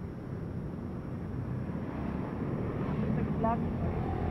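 City street traffic: engines of cars at an intersection making a steady low rumble that grows louder toward the end, with a short voice just before the end.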